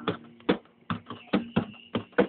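Guitar strummed in a steady rhythm, a sharp strum about every half second with the chord ringing between strokes.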